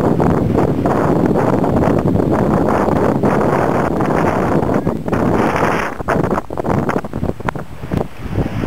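Strong wind buffeting the camera microphone: a loud, gusty rush of wind noise that eases and breaks up a little after about six seconds.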